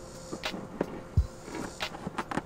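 Several light clicks and knocks of a motorcycle grab rail and seat hardware being worked into place by hand, one or two a second, with a duller thump a little past the middle.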